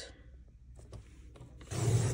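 Fiskars sliding paper trimmer cutting a sheet of patterned paper: the cutting head is run along the rail in one brief, noisy stroke of about half a second near the end, after a few faint handling ticks.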